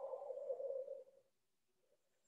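A soft exhale blown out through a curled tongue in shitali (cooling) breathing, a faint breathy blowing that stops a little over a second in.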